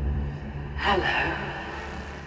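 A quiet break in a dark electronic track: the bass fades away, and about a second in a short vocal sample sounds, falling in pitch.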